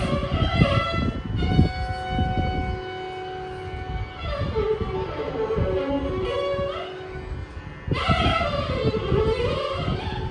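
Carnatic concert music: a violin plays gliding, ornamented phrases with some long held notes over mridangam strokes. The drumming thins out in the middle and comes back strongly about eight seconds in.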